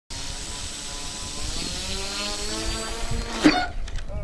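Value Hobby Easy Stick model airplane's engine running up, rising in pitch as the throttle is advanced for takeoff. About three and a half seconds in a sharp knock as the plane noses over and the propeller strikes the grass, and the engine cuts off suddenly.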